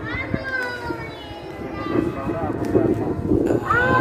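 Men's voices talking indistinctly.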